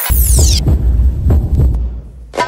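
A loud, deep bass throb pulsing like a heartbeat, with a high sweeping whoosh fading out in the first half second.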